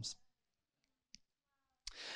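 Near silence: room tone in a pause, with one short faint click a little past the middle, before the speaking voice returns at the very end.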